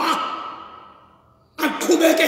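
A man preaching in a loud, impassioned voice: his phrase trails off and fades away over about a second and a half, then he starts speaking again near the end.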